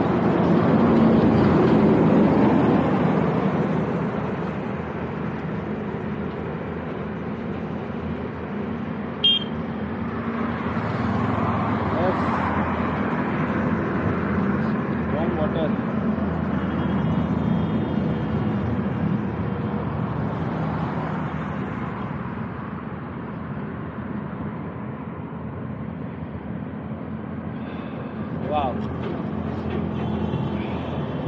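Road traffic passing on a highway: a steady rush of vehicles that swells as one goes by about a second in and again around eleven to thirteen seconds. There is one sharp click about nine seconds in.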